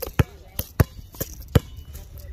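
A basketball being dribbled on an outdoor hard court: about six bounces in uneven rhythm, some louder than others.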